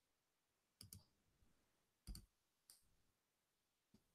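Faint clicks of a computer mouse: a double click just under a second in, a louder double click about two seconds in, and single clicks after, in near silence.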